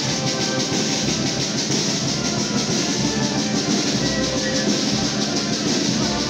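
A procession band playing continuous music with drums and wind instruments.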